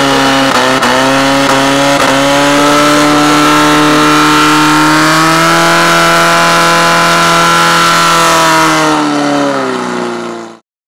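Portable fire-pump engine running flat out at high revs under load, pumping water to the nozzles. The pitch climbs a little about halfway through, then sags near the end as the sound fades.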